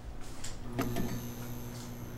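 A click about a second in, then a steady electrical hum with a thin high whine over it, like a light or appliance coming on.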